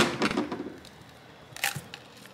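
Cracked phone display glass and its adhesive giving way as the screen is pried and pulled off the frame: a sharp crack at the start with brief crackling after it, and a second short crackle near the end.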